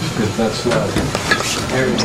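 Quiet voices of several people murmuring, with rustling and a few sharp clicks.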